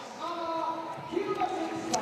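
A stadium public-address announcer's voice, drawn out and echoing, over the steady low noise of a crowd in the stands.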